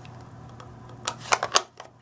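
Low room hum, then a quick cluster of three or four light clicks and taps a little over a second in, as an ink pad and a rubber stamp are handled and set down on the craft table.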